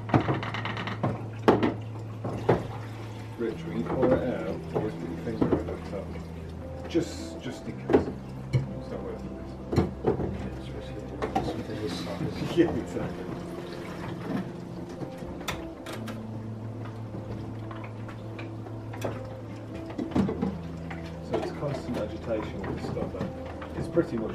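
Background music of sustained low chords changing every few seconds, over frequent short knocks and clatter of plastic film developing tanks being handled at a sink, with murmured voices.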